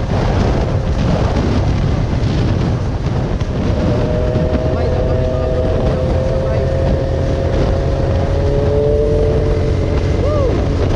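Motorcycle engine running at steady cruising speed, heard from the rider's seat under heavy wind rush on the microphone. From about four seconds in, a steady engine tone rides over the noise, dipping slightly in pitch near the end.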